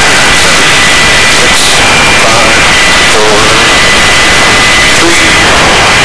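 Helicopter turbine and rotor noise heard at the open cabin door: a loud, steady rush with a thin high whine held throughout.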